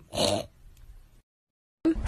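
A cat gagging once on the taste of a salt and vinegar chip: one short, rough retch, followed by a few faint smaller sounds.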